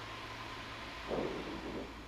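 Steady cabin noise of a Cessna 172 in flight: an even hiss of engine and airflow.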